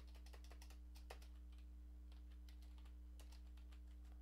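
Faint computer keyboard typing: scattered, irregular key clicks, one a little louder about a second in, over a steady low hum.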